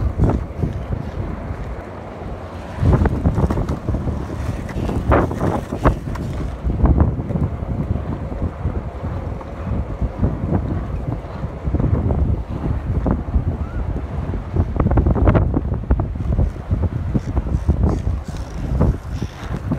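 Wind buffeting the microphone of a camera carried on a moving bicycle: a low, rumbling rush that swells and eases in gusts.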